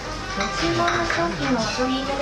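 Voices talking, with light clinking of plates and dishes as food is lifted off a serving robot's trays.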